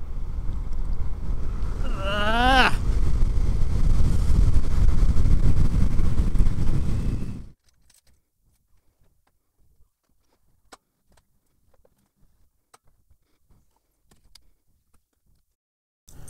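Wind buffeting and road rumble on a helmet-mounted camera while riding an electric motorcycle, with a brief warbling rising tone about two seconds in. The noise cuts off suddenly, and a few faint clicks follow as a key works the lock of an aluminium sliding door.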